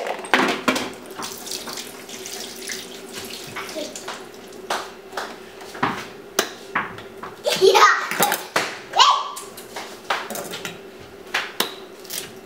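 Water splashing and sloshing, with scattered knocks, as ears of corn go into boiling water in an electric pressure cooker's inner pot. A child's voice rises briefly about eight seconds in.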